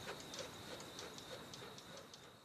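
Faint, even ticking, about three ticks a second, with a thin steady high tone behind it, slowly fading: a ticking sound effect trailing off at the end of a logo sound sting.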